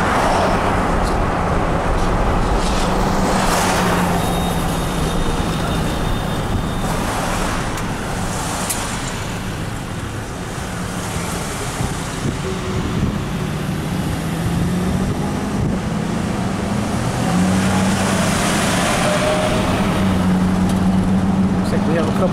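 Car engine and road noise heard from inside a moving car, a steady hum that rises slowly in pitch in the second half as the car picks up speed.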